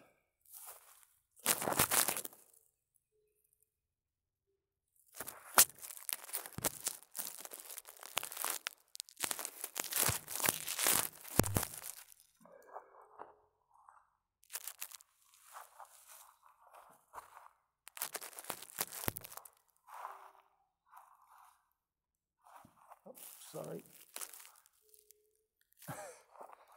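Handling noise: dry grass and leaves crunching and rustling close to a phone's microphone, in irregular spells that are loudest in the first half. A short laugh comes near the end.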